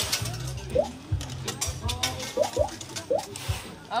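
Funfair arcade din: music with a pulsing bass beat and chirpy electronic tones, over fast mechanical clicking and ratcheting from the coin-pusher machines.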